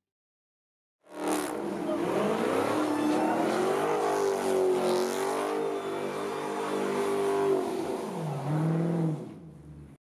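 A car engine revving hard and held at high revs while the car spins donuts, with tyres screeching. About a second in it cuts in after silence. Near the end the revs dip and climb again before the sound fades out.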